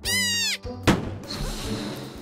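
A high-pitched, squeaky, voice-like squeal that falls in pitch over half a second, then a single sharp pop about a second in as scissors cut into a water-filled balloon, over light background music.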